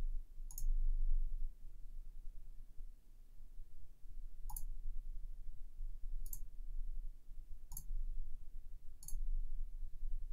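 Computer mouse clicking: five single clicks, spaced a second or more apart, over a faint low hum.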